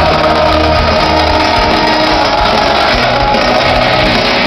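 Live hard rock band playing loudly in an arena, heard from among the audience, with the hall's echo and crowd noise mixed in.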